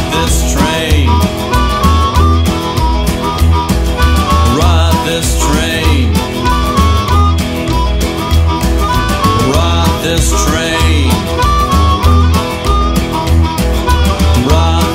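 Instrumental break of a rockin' roots band song: a lead line bending in pitch over a driving beat, bass and guitar.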